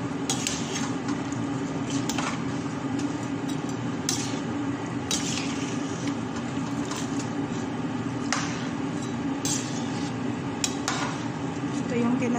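Metal spoon stirring a pot of broth with rice and mung beans, clinking against the side of the steel pot every second or so, over a steady low hum.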